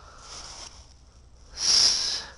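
A single sharp sniff, a short breath in through the nose, about a second and a half in, after quiet background.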